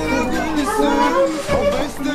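Voices talking, including a child's, over background music.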